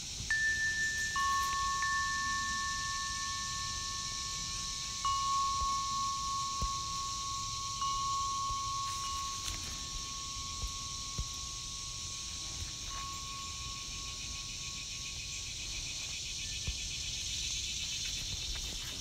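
Chime tones struck a few times in the first eight seconds, a higher and a lower note ringing on and fading slowly until they die away about sixteen seconds in, over a steady high hiss.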